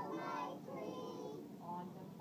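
A group of three-year-old children singing together.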